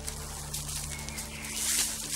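Knife blade digging and scraping into dry soil, with a louder scrape near the end. A low steady hum runs underneath.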